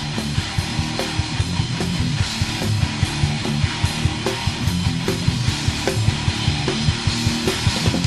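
Thrash/death metal band playing: distorted guitars and bass over fast, driving drumming.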